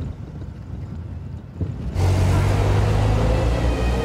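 Low rumble of a car heard from inside the cabin; about halfway through, a louder, steady low engine hum with hiss cuts in.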